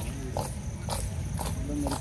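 A group of women clapping their hands together in unison, about twice a second, keeping time for a Bathukamma folk song. The singing picks up again near the end.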